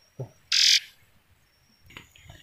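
A small captured bird held in the hand giving one short, harsh call about half a second in.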